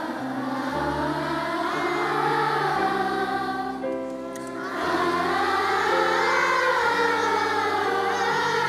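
A large children's choir singing in unison over held piano chords. The voices thin briefly about halfway through, then come back at full strength.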